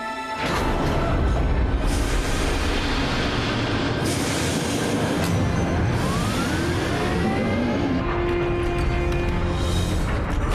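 Sound-effect rumble of the Imperial dome's launch thrusters igniting, starting suddenly about half a second in and running heavy and steady, mixed with background music. A few rising sweeps come partway through.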